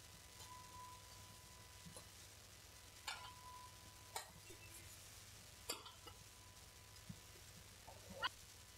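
Faint, sharp cracks of badminton rackets striking a shuttlecock in a rally: three clearer hits about a second or more apart, with a few fainter ticks, over an otherwise quiet background.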